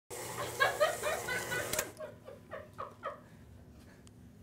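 A woman laughing: a quick run of high laughs for about two seconds, then a few slower laughs, each falling in pitch, that fade out.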